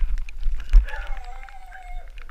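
Mountain bike ridden downhill on a wet lane, recorded on a helmet camera: wind buffets the microphone and the bike rattles and clicks over the surface, with a heavy thump about three-quarters of a second in. For the last second a drawn-out whine-like call holds on one slightly falling note.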